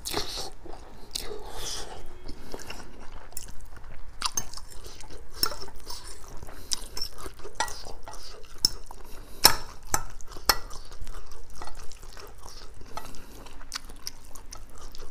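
Close-miked eating of spicy noodles with butter garlic prawns: wet chewing and a slurp of noodles at the start, with a metal fork repeatedly clinking and scraping against a ceramic bowl as the noodles are stirred and twirled.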